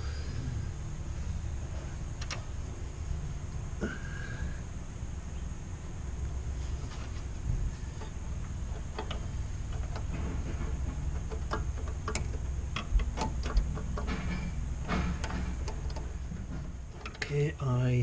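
Scattered light metallic clicks and taps of a bolt and spanner being worked under a brake master cylinder, more frequent in the second half, over a steady low background hum.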